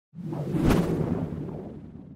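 Logo-intro sound effect: a whoosh that builds to a sharp hit under a second in, then a low rumble that fades away.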